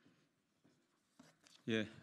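Faint rustling and light taps of paper sheets being handled on a podium, followed near the end by a man's voice saying a short "ye".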